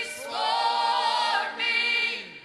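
A small group of singers, men and women together, singing a gospel worship song through microphones, holding one long note and then starting another near the end.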